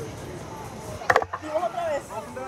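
Slingshot ride capsule setting down in its dock: a sharp clunk of a few quick knocks about a second in, followed by a low hum.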